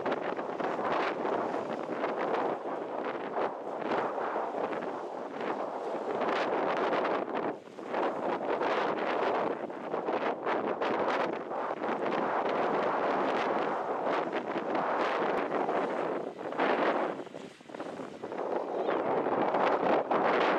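Wind buffeting the camcorder's microphone: an uneven rushing that rises and falls in gusts and drops away briefly twice.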